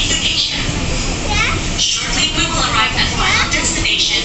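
Children's high-pitched chatter and voices inside a moving commuter train carriage, over the train's steady running rumble.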